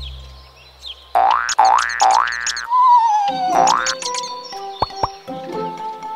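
Cartoon springy 'boing' sound effects over light children's background music: three quick rising boings, then a wavering tone sliding down, then one more boing, followed by two short clicks.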